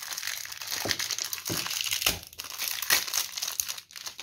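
Plastic wrapper of a soap bar crinkling and crackling irregularly as it is handled and torn open by hand.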